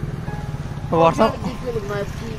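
A person's voice, a few syllables about a second in, over a steady low rumble of motor-vehicle traffic.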